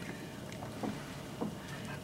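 Quiet room tone in a pause, with two faint short soft sounds, one a little under a second in and one about a second and a half in.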